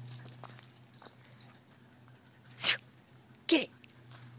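A border collie gives one short, sharp snort like a sneeze, a little past halfway, as it sniffs close at a turtle on the ground. A woman shouts 'Get it!' just after.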